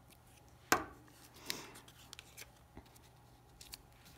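Craft handling on a tabletop: one sharp click or knock about a second in, then a few light taps and paper rubbing as a glued paper cut-out is pressed down flat by hand.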